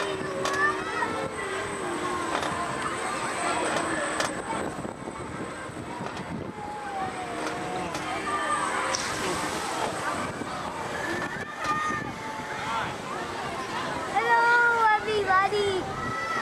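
High, wavering voices of riders calling out over the steady rushing noise of a moving amusement park ride. The voices are loudest about fourteen seconds in.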